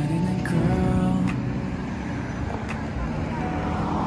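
Road traffic at a busy intersection, cars passing, with the traffic noise swelling near the end. Soft background music and voices are in it too.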